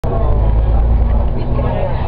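Steady low rumble of a city bus heard from inside the cabin while it drives, with people's voices faintly underneath.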